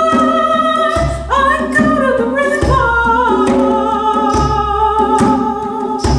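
A woman singing long, held notes over slow, deep djembe beats.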